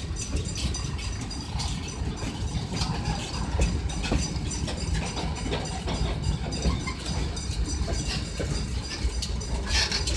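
Loaded freight train's oil tank cars rolling past at close range: a steady low rumble of steel wheels on rail, with irregular clicks and a brief high squeal near the end.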